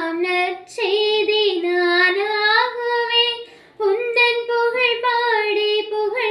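A young woman singing solo and unaccompanied, holding long notes that glide between pitches. She breaks off briefly for breath just under a second in and again about four seconds in.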